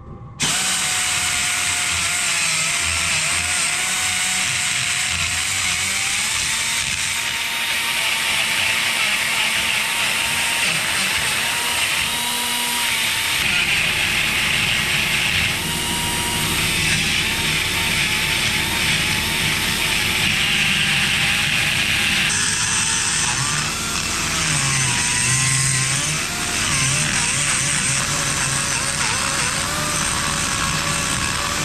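Die grinder with a carbide burr grinding between the cooling fins of a Royal Enfield cylinder barrel, starting about half a second in. It runs continuously, its whine wavering in pitch as the burr bites into the metal.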